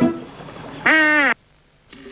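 A single short pitched call, about half a second long, a little under a second in, followed by a brief near-silent gap.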